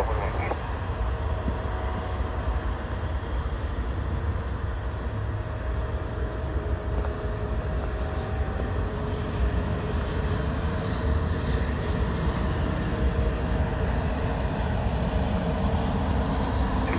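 Distant jet airliner engines: a steady low rumble with faint steady engine tones, growing slightly louder towards the end.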